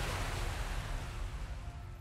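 Ocean surf washing, a steady rushing of sea noise that slowly fades toward the end.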